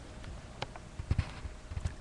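Camera handling noise: scattered faint clicks and a few soft low thumps, clustered about a second in, as the webcam is moved and adjusted.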